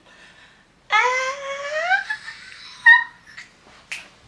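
A woman's voice giving a long rising squeal, followed by a short vocal sound about two seconds later and a brief click near the end.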